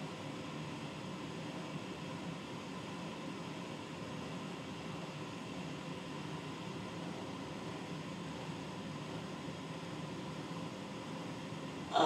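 Steady low background hiss with a faint hum and no distinct events.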